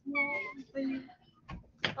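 Two short vocal sounds, each held on a steady pitch, in the first second, then a faint click and a sharper, louder click near the end.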